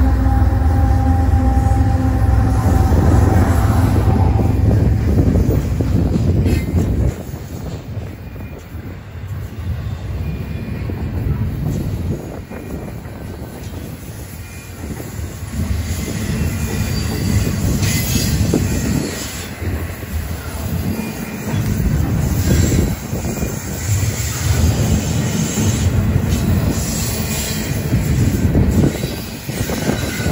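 Union Pacific diesel locomotives passing close with a deep engine rumble. About seven seconds in the rumble drops away, and double-stack intermodal container cars roll by, their wheels clattering over the rail joints.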